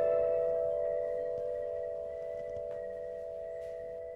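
Suspense film score: a sustained ringing drone of a few close pitches held together, slowly fading away.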